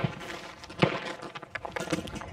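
Footsteps on gravel: a few short scuffs and knocks, about a second apart, over faint outdoor background noise.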